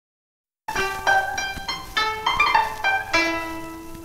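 Chinese harp plucked in a melody of single notes, about three a second, each ringing and fading; it starts after a short silence, and the note just past three seconds rings out longer.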